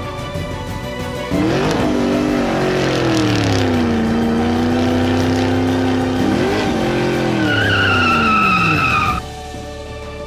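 A sports car engine revving: the pitch climbs about a second in, settles into a steady drone, climbs again briefly and then falls away, with a high tyre squeal over the last second or two before everything cuts off abruptly. Background music plays underneath.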